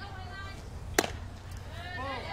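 A softball smacks into the catcher's leather mitt as a pitch is caught: one sharp pop about a second in, over steady ballpark background.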